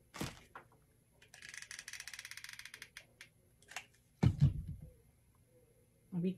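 Hot glue gun being handled as a new glue stick goes in: a rapid ratcheting rattle lasting about a second and a half, then a click and a dull thump on the tabletop.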